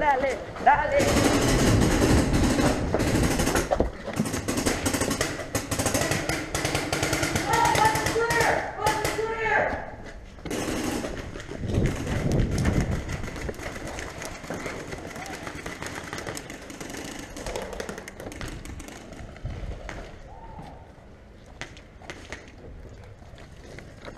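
Paintball markers firing rapid strings of pops, with shouting voices. The firing is densest in the first ten seconds, then thins out to scattered shots.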